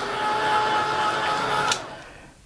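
Handheld craft heat tool running with a steady whine, blowing hot air to dry wet acrylic paint. It switches off near the end.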